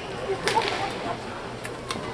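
A few sharp cracks ring out in a large sports hall: one about half a second in and two more near the end, over the hall's steady background.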